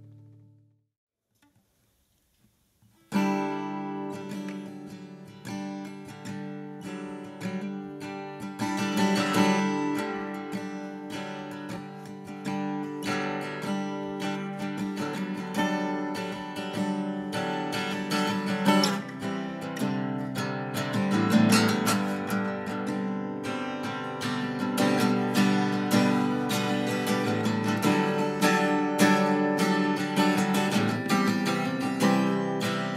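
Steel-string acoustic guitar played by hand, picked and strummed chords, starting suddenly about three seconds in after a brief near-silence.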